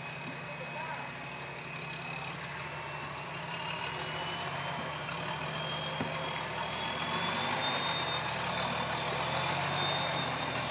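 Toyota FJ40 Land Cruiser's engine running at low revs as it crawls over creek rocks, growing slightly louder, with a thin high whine that slowly rises in pitch from about two seconds in.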